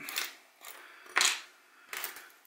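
Small handling noises at a watchmaker's bench as a removed watch battery and tweezers are set aside: two short scrapes, one at the start and a louder one just over a second in.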